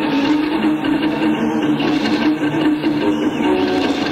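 Electric guitar solo built up from delay echoes: held notes repeat and overlap into a dense, steady wash of sound. It is heard on a hissy, lo-fi audience cassette recording.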